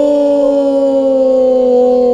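A man's long, drawn-out wailing cry of "No", held steadily and sinking slowly in pitch.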